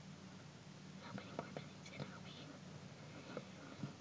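Faint whispering in short snatches from about a second in, over a low steady hum.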